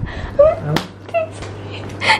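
Two short, high-pitched cries, the first rising in pitch, with a sharp click between them.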